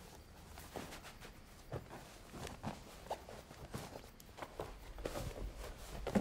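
Faint, soft footsteps with light rustling: about a dozen irregular light knocks.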